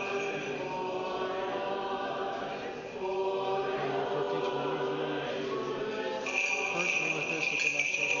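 Orthodox liturgical chant: voices holding level sung notes that change pitch every second or two, reverberant in a large church. About six seconds in, a jingling of small bells joins in.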